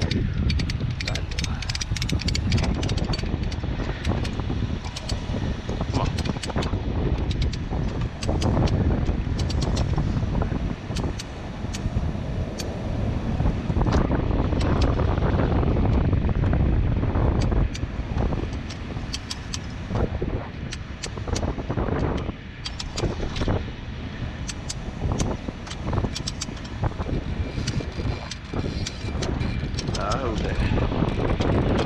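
Wind rumbling on the microphone, with many scattered sharp clicks and clinks as gloved hands handle the metal hooks, shackles and sling on a string of porcelain suspension insulators.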